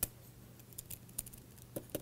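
A stylus tapping and clicking on a tablet surface as letters are handwritten: about eight sharp, irregular ticks, the first the loudest, over a faint steady low hum.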